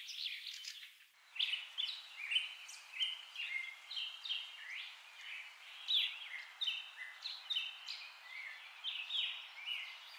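Birds chirping: many short, overlapping chirps and gliding whistles over a steady background hiss, with a brief dip about a second in.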